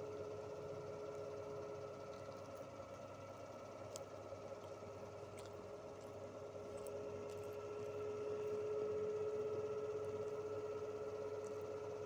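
Faint steady hum made of a couple of held tones, swelling slightly louder about two-thirds of the way through, with a few faint clicks.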